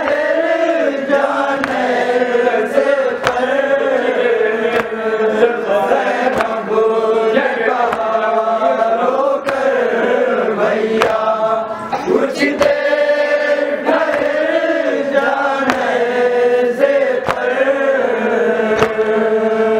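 Group of men chanting a Shia nauha (lament) in unison, the voices held in long, gliding sung lines, with a sharp chest-beating (matam) strike about once a second.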